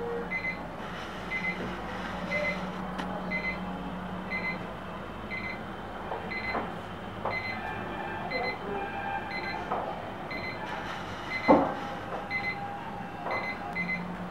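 Electronic alarm clock beeping: short high beeps repeating about twice a second, going unanswered. A sharper knock comes about eleven and a half seconds in.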